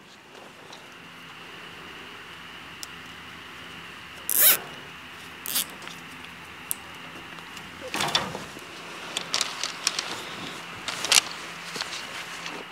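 A plastic zip tie being cinched tight around the insulated wire at a wooden fence post: one short zipping ratchet about four seconds in and a smaller one soon after. This is followed by small clicks and rustles of the wire being handled.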